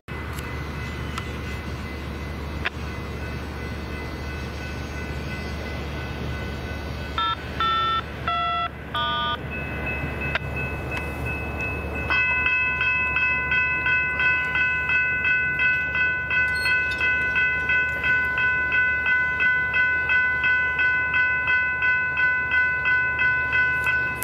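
Railroad grade-crossing electronic warning bells ringing for an approaching train. They are faint at first. A few short horn blasts come about seven to nine seconds in. From about twelve seconds in the nearby crossing bells ring loudly, pulsing about twice a second.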